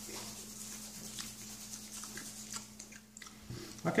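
Someone chewing a seasoned, dried whole cricket: faint, scattered small crunches, with a low steady hum underneath.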